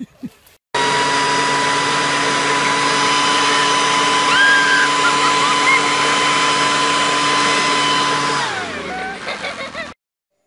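Leaf blower running at full speed, a loud steady whine that starts abruptly about a second in. Near the end its pitch falls as it winds down.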